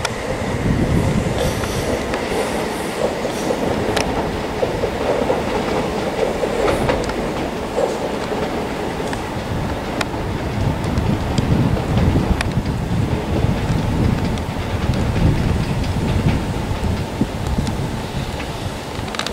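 Southern Class 377 Electrostar electric multiple unit running along the track: a steady loud rumble of wheels on rail with occasional sharp clicks.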